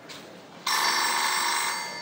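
A telephone ringing: one ring about a second long that starts suddenly just over half a second in, a stage sound effect for an incoming call.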